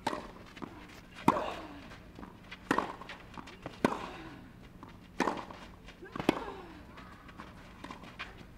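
Tennis serve followed by a baseline rally: six racquet strikes on the ball, about one every second and a quarter, several with a short grunt from the player as she hits.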